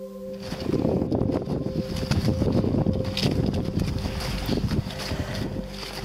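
Wind buffeting the camera microphone in a dense, rough rumble that starts about half a second in and runs on unevenly.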